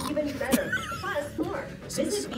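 A woman's voice making a high, wavering squeal in imitation of a pig.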